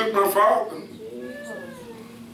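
A man's preaching voice, loud for the first half-second, then a fainter drawn-out vocal tone that rises and falls about a second in.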